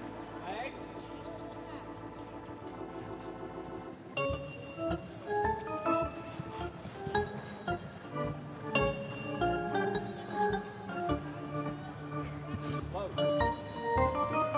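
Arena music: held chords for about the first four seconds, then a livelier tune of quick, stepping notes.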